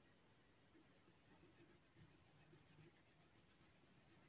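Very faint, quick back-and-forth scratching of colour being rubbed onto paper, several strokes a second, starting about a second in.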